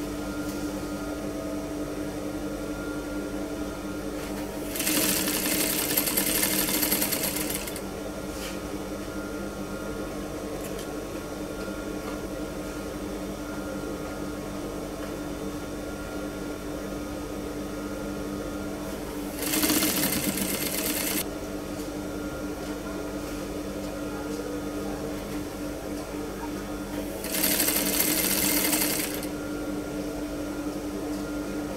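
Industrial straight-stitch sewing machine, its motor humming steadily, with three short runs of stitching: one about five seconds in, one about twenty seconds in, and one near the end.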